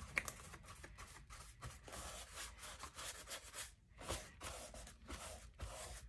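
Faint, irregular rustling and scraping of paper as glued collage papers are pressed and smoothed down onto a journal page by hand.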